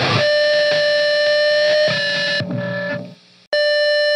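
The full band stops and a distorted electric guitar is left ringing on one held note. It fades to near silence about three seconds in, and half a second later a new held, distorted guitar note starts, opening the next song.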